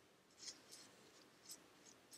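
Near silence: room tone with a few faint, brief scratchy handling sounds, about four in the two seconds, as a jar is held and shifted in the hands.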